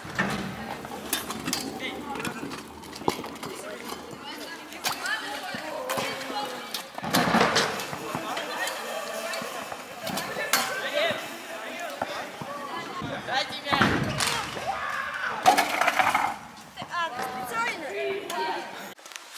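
Kick scooters on skatepark ramps: wheels rolling and sharp knocks and slaps as decks hit the ramp surface, repeated throughout, with children's voices calling out.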